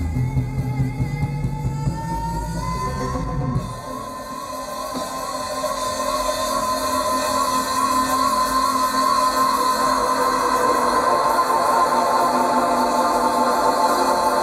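Live band music: drums and bass play for about the first four seconds, then drop out abruptly, leaving a sustained synthesizer tone that slowly swells.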